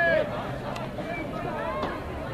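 Several voices calling and shouting over one another, with one loud drawn-out shout right at the start.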